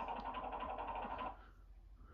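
DVD menu transition sound effect, a rapid rattling whir, heard through a television's speaker; it stops a little over a second in.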